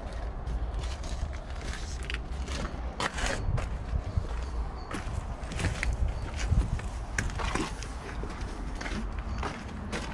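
Footsteps scuffing and crunching on gritty, gravel-strewn tarmac at a slow, irregular walking pace, over a steady low rumble.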